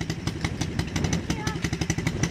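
Small dirt bike's single-cylinder engine idling in neutral, a steady rapid putter.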